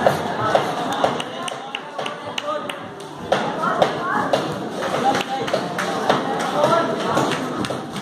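Boxing bout in a ring: a string of sharp taps and thuds from punches and footwork on the canvas, with voices calling out in between.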